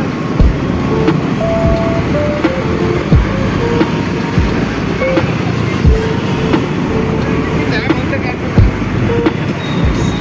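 Riding a scooter through busy city traffic: steady wind and road noise on the microphone with a few low thumps, and several short horn beeps from surrounding vehicles.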